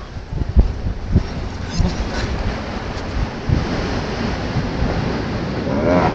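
Wind buffeting the microphone over the steady wash of ocean surf, with uneven low thumps from the gusts.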